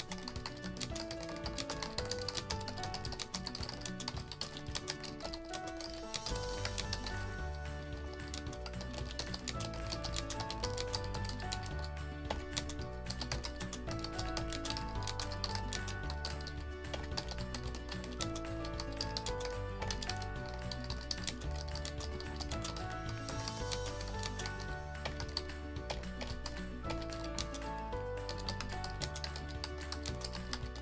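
Rapid typing on a computer keyboard, a steady run of clicking keystrokes, over background music whose bass line comes in about six seconds in.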